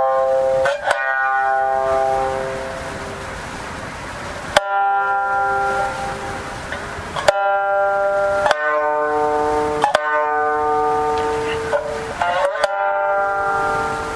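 Jiuta shamisen played solo: single plucked notes and short figures, each ringing out and slowly dying away, with gaps between phrases and a quick run of notes near the end.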